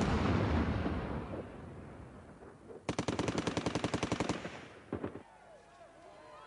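Machine-gun fire: a long echo dies away from a burst just ended, then a second rapid burst of about a second and a half comes about three seconds in and rings off into the street.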